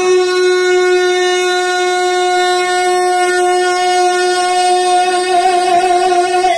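A male naat reciter holding one long, loud sung note at a steady pitch, unaccompanied.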